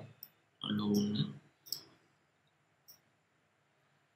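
Three sharp computer mouse clicks, spaced a second or more apart, as the pointer works on a keyframe graph.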